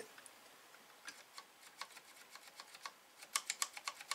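Faint, scattered small clicks and taps of fingers handling the mechanism of an opened Atari 1050 floppy disk drive whose motor is jammed, with a quick run of sharper clicks near the end.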